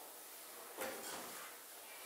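A single short scrape or knock about a second in, fading quickly, over faint room noise.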